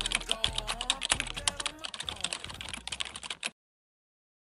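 Typing sound effect: a rapid, uneven run of key clicks that stops abruptly about three and a half seconds in.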